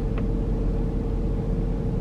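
Steady low rumble of a car's engine idling, heard from inside the cabin.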